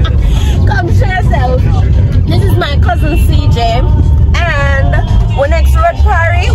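Voices and music over the steady low rumble of a moving car, heard from inside the cabin.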